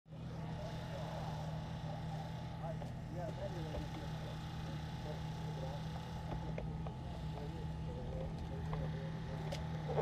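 Steady low hum of an engine running at idle, with faint voices chattering in the background.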